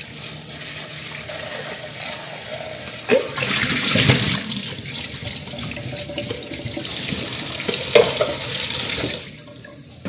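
Kitchen faucet sprayer running water onto kale in a plastic salad spinner basket, getting louder in two stretches, with a couple of plastic clunks as the basket and bowl are handled. The water shuts off about nine seconds in.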